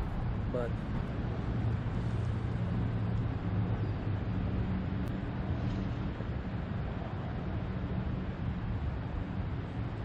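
Steady low rumble of road traffic across the water, with an engine drone that is strongest in the first half and eases off after.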